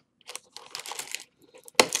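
Foil wrappers of Panini Playbook trading-card packs crinkling in short rustles as the packs are handled and pulled from the box's cardboard insert.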